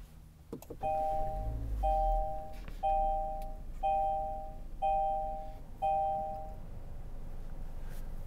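2023 Kia Forte's warning chime sounding six times, about once a second, each chime two steady tones together, as the car is switched on and the instrument cluster runs its system check. A low rumble sets in about a second in and continues underneath.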